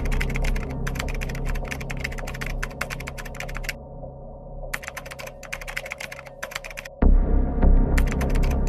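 Typing sound effect: rapid key clicks in runs with short pauses, over a steady low music drone. A deep low hit comes about seven seconds in.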